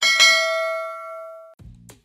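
A notification-bell 'ding' sound effect for the subscribe-button animation: one struck bell tone that rings out and fades over about a second and a half. A short low hum follows near the end.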